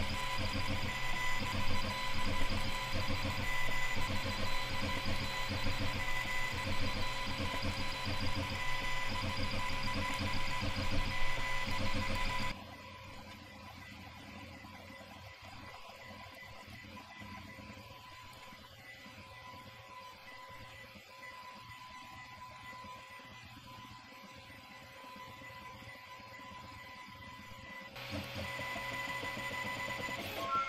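Aufero Laser 1 diode laser engraver running while engraving: a steady whine with a rapid, irregular pulsing hum from the stepper motors driving the laser head back and forth. About a third of the way in it drops suddenly to a much quieter level. Near the end the louder whine returns.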